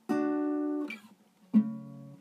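Acoustic guitar being strummed. A chord is held for under a second and cut off short, then after a brief pause another chord is struck about one and a half seconds in and left to ring.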